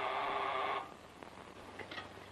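Electric servant-call buzzer sounding once, a steady buzz of about a second that stops suddenly: a call from one of the rooms to the servants. A few faint clicks follow.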